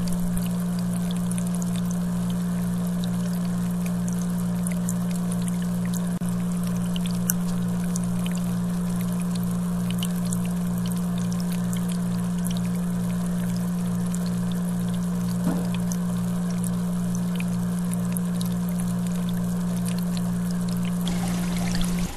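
Aquarium filter running: a steady electric motor hum with a low, regular pulsing under it, and water pouring and trickling from the filter's outflow back into the tank.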